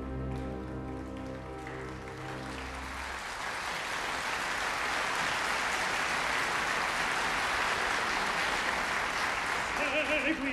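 Orchestra holding the closing chord of a tenor's aria for about three seconds, while opera-house audience applause rises over it and carries on alone, slowly swelling.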